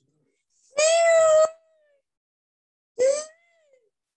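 A cat meowing twice: a longer meow about a second in that holds its pitch and then falls away, and a shorter one near the end that rises and falls.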